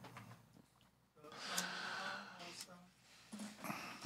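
A faint, low voice speaking quietly, with near-silent gaps before and after.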